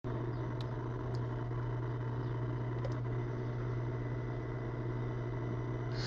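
Steady low hum under a faint hiss, with a couple of faint clicks in the first second or so: the background noise of a voice recording with nobody speaking yet.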